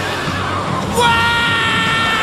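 A stylised whinnying cry of the animated Pegasus beast, a winged horse, as it charges on its special move. One long high-pitched call starts about a second in and slides slowly lower, after a rushing whoosh.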